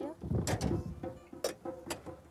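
A stainless steel saucepan being handled, with water sloshing and a few sharp metal clinks, the last two close together near the end as its lid is set on.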